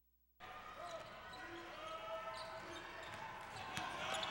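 Arena crowd murmuring during a basketball game, with a basketball bouncing on the hardwood floor and one sharp bounce just before the end. The sound cuts out completely for the first half second at an edit.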